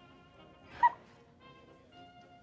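Soft background music with sustained notes. Just under a second in, a single brief, sharp, high-pitched squeak-like sound cuts through, much louder than the music.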